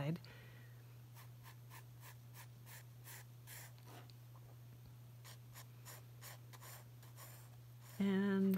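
Graphite pencil drawing lines on sketchbook paper: a run of short, faint scratchy strokes, several a second, thicker in the first half and sparser later. A steady low hum runs underneath.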